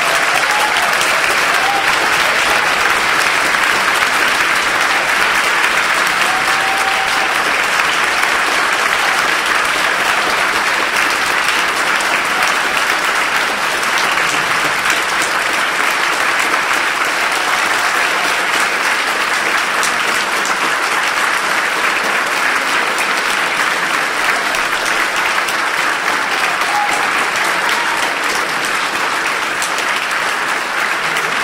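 Large audience applauding loudly and steadily at the end of an orchestral piece.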